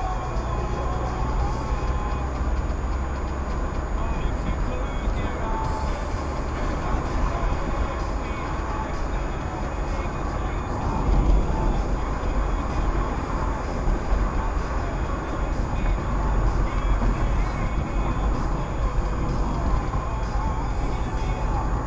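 Steady road and engine noise heard inside a moving car's cabin, mostly a low rumble, with a few brief louder bumps in the middle.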